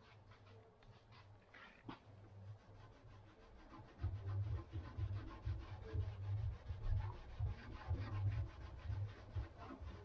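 Hand rubbing a cloth back and forth on the painted steel trunk lid of a Mercedes W203, wiping off the adhesive residue left where the badge letters were removed. The strokes start about four seconds in and run at about three a second.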